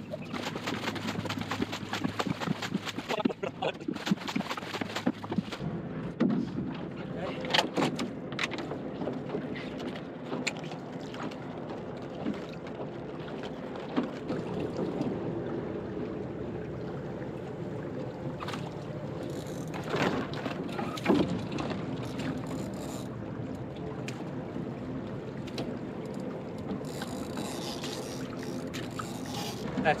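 Water splashing and lapping around a small plywood sailing skiff, with occasional knocks from gear moving in the boat.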